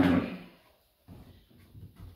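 A single cough, then faint wooden knocks and scrapes as a tall wooden studio easel is adjusted by hand.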